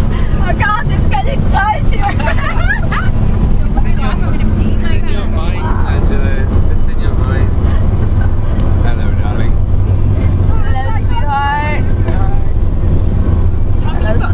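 Steady low road and engine rumble inside a car cabin at motorway speed, with voices of the passengers talking now and then over it.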